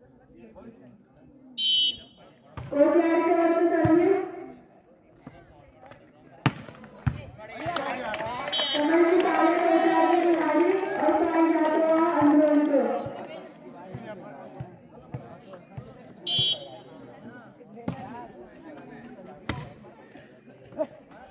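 Referee's whistle blown in three short blasts, between them loud drawn-out shouts, the longest held for about five seconds. A few sharp slaps of the volleyball being hit, two of them near the end.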